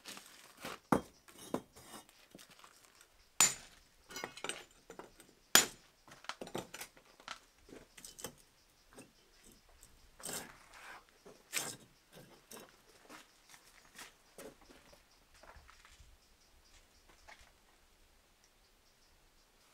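Firebricks being taken down by hand from a bricked-up kiln door: irregular knocks, clinks and scrapes of brick on brick, the sharpest about three and a half and five and a half seconds in, growing sparser toward the end.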